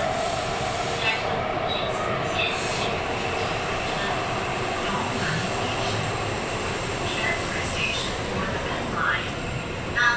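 Taipei Metro C371 train running through a tunnel, heard from inside the car: a steady rumble of wheels and running gear.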